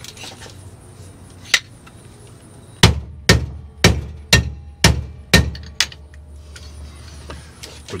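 A single sharp knock, then a run of seven heavy knocks about two a second, starting about three seconds in.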